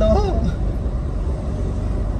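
Car driving along a road, heard from inside the cabin: a steady low rumble of engine and tyres, with a voice briefly at the start.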